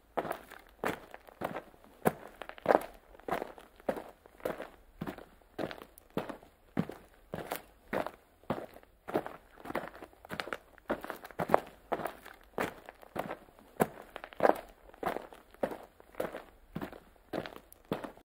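A person's footsteps at a steady walking pace, about two steps a second, a few landing harder than the rest.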